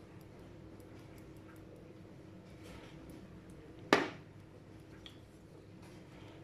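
Quiet kitchen room tone with a faint steady hum, broken by one sharp click or tap about four seconds in, while curry is added to the rice mixture.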